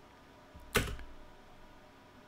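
A single sharp click of a computer keyboard key, the space bar, about three-quarters of a second in.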